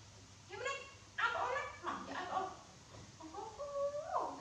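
Macaque monkey vocalising: three bursts of short, high-pitched calls.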